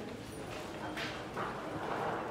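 A couple of soft footsteps on a hard floor, about a second in, over a quiet corridor background.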